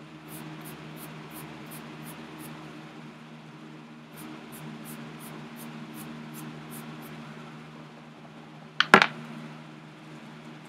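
Quick rhythmic wiping strokes, about three a second, rubbing dust off a vintage paperback's cover in two runs, over a steady low hum. One sharp knock near the end is the loudest sound.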